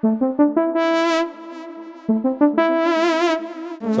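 Synthesizer playing a phrase of held notes, with a quick run of note changes near the start and the tone brightening and fading twice, about a second and three seconds in. It is heard through the Maschine+ reverbs with the delay send turned down low.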